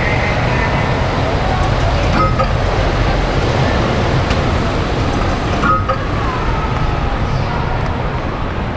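Loud, steady arcade din: a dense wash of crowd chatter and game-machine noise, with two brief tones about two and six seconds in.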